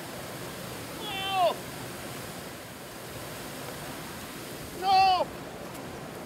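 A man's excited exclamations: two short calls that fall in pitch, one about a second in and a louder one near the end, over a steady rushing background noise.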